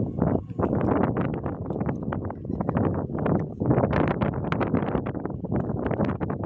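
Wind buffeting a phone's microphone in irregular gusts, giving a loud, rough rumble throughout.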